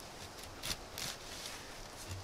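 Wooden stick being scraped along a scandi-ground bushcraft knife blade braced on the knee, shaving curls for a feather stick: two brief, quiet scrapes near the middle.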